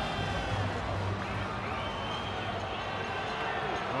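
Steady ballpark crowd noise: the stadium audience's general hubbub, with faint voices in it and no single loud event.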